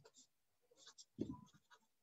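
Faint handling noises at a desk: a few short light scratches or rustles and one soft thump a little over a second in.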